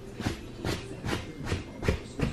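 Wet wipe rubbing across a faux-leather sofa cushion in short back-and-forth strokes, about five in two seconds.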